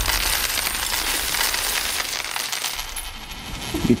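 A huge heap of pennies poured onto a counter: a long, dense clatter of many coins spilling and settling, thinning out near the end.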